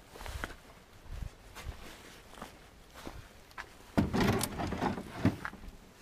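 Rummaging among discarded wooden chairs: scattered knocks and bumps of wood, then a louder burst of clattering about four seconds in as things are shifted.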